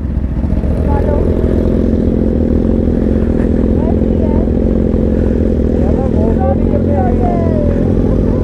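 Sport motorcycle engines idling and ticking over at walking pace: a steady low rumble with no revving.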